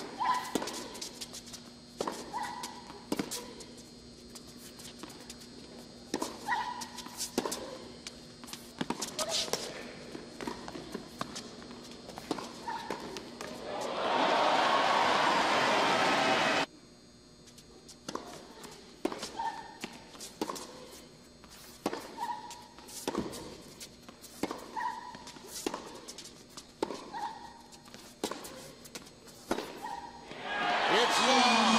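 Tennis rally on an indoor hard court: repeated sharp racket-on-ball hits and footfalls, with short squeaks between them. Midway through, crowd applause swells for a couple of seconds, then cuts off suddenly, and the rally sounds resume.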